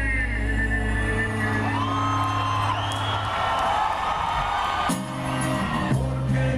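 Rock band playing live through a stage PA, recorded from the crowd: a held passage of guitar and bass with a rising high note about two seconds in, moving into a new bass riff near the end.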